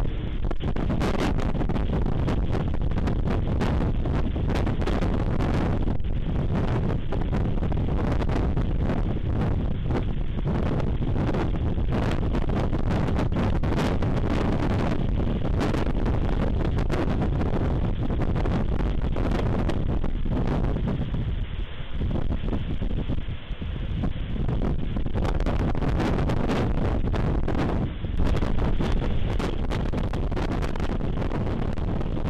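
Wind buffeting an outdoor nest camera's microphone: a dense, steady low rumble that eases briefly a little over twenty seconds in and swells again near the end.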